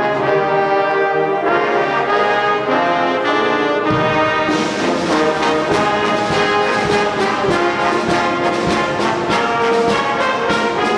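University band's brass section playing held chords, with drums coming in about four seconds in and keeping a steady beat under the horns.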